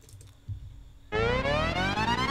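Karaoke accompaniment from an ELF 707 machine starting its song intro: about a second in, a synthesizer tone enters and glides steadily upward in pitch. Before it there is only a faint click.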